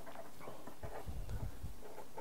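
Felt-tip marker writing on paper: faint scratchy strokes, with a few soft low thumps from about a second in, over a steady low hiss.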